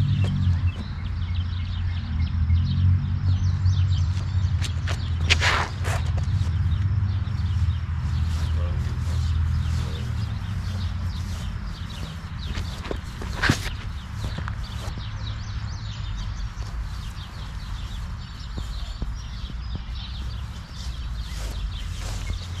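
Wind noise on the microphone, heavy for the first half and then easing, with two sharp snaps, one about five seconds in and one about thirteen seconds in.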